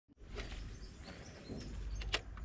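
Outdoor ambience over open water: a low, steady rumble with a few faint, short bird chirps.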